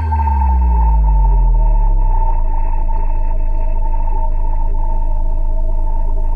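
Synthesizer closing chord of a karaoke backing track: a low tone slides down in pitch over the first two seconds, then holds steady under a sustained high note.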